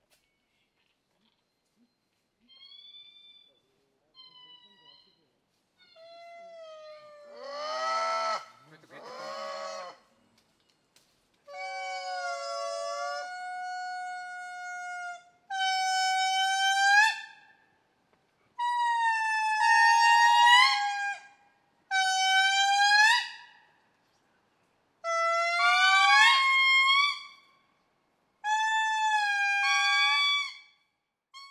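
Indri singing: faint short calls at first, then from about a third of the way in a series of loud, long held notes, each lasting one to two seconds, many sliding up or bending in pitch, with short gaps between them.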